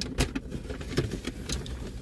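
Scattered clicks and rustles of takeout food packaging being handled, over a low steady hum.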